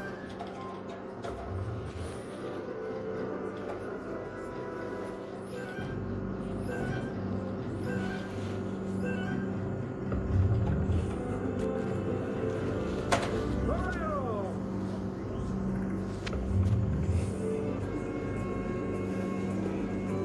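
Merkur El Torero slot machine playing its free-games music, a steady electronic tune with low bass swells.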